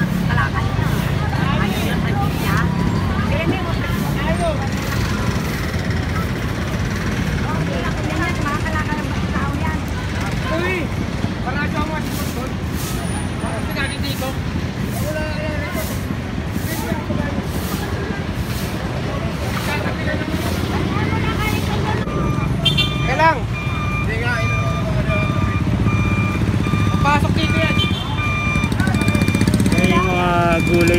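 Steady rumble of truck engines and street traffic with scattered voices. From about two-thirds of the way in, a vehicle's reversing beeper sounds a repeated high tone.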